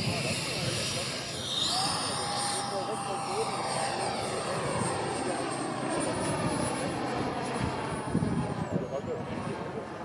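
Electric ducted-fan RC speed model with a Wemotec Flüsterimpeller, hand-launched and climbing away under power: a high whine that steps up in pitch about two seconds in and again around six seconds, then dips briefly near the end.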